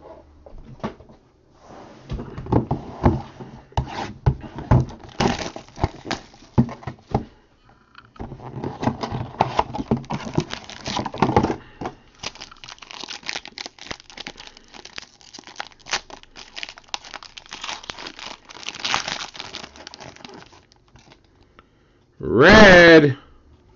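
Foil wrapper of a Topps Supreme baseball card pack crinkling and tearing as it is opened by hand, in irregular bursts with a brief pause about eight seconds in, along with the clicks of packaging and cards being handled.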